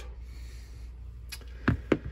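Two light knocks close together near the end, as a small antique Bulldog revolver is set down on a rubber cutting mat, over a low room hum.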